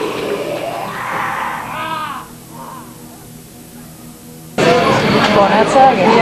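Shouted voices and crowd noise between songs at a live metal gig, with a steady amplifier hum showing through a lull, then a sudden loud surge of crowd and stage noise with shouting near the end.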